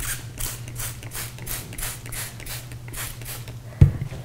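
Hand trigger spray bottle misting water: a quick, even run of short hissing spritzes, about four a second, with the trigger mechanism working. A single low thump comes just before the end.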